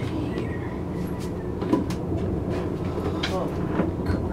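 A steady low rumble with faint murmuring voices and a few light clicks over it.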